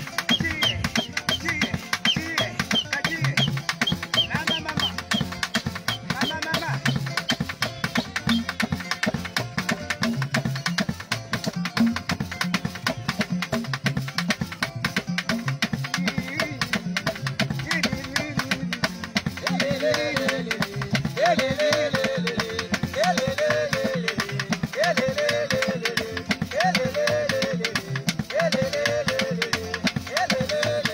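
Tonga band music: drums and percussion playing a steady, driving rhythm. About twenty seconds in, a wavering melody line joins over the beat.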